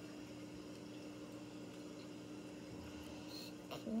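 Quiet indoor room tone with a faint steady low hum; the soft squishy toys being handled make no clear sound. A short spoken word comes at the very end.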